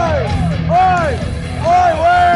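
A live metal band playing, with drums and bass steady underneath, and short shouted vocal calls rising and falling in pitch over the music.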